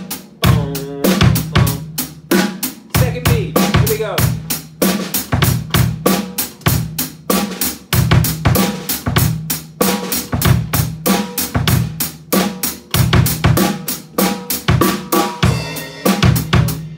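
Acoustic drum kit played with sticks: a steady groove of kick drum and snare under evenly spaced hi-hat and cymbal strokes.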